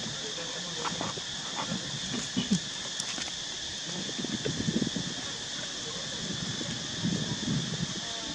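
Long-tailed macaques moving and swimming in shallow pool water, with bursts of sloshing and splashing about two, four to five, and seven seconds in, over a steady high buzz.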